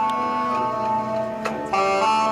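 Marching band playing a slow passage: held wind chords that shift a couple of times, with a sharp percussion click about one and a half seconds in.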